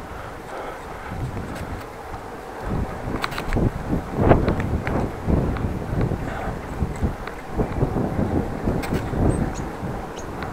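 Wind buffeting the microphone of a camera on a moving bicycle: an uneven low rumble that swells and eases in gusts, louder from about three seconds in, with scattered short clicks and rattles.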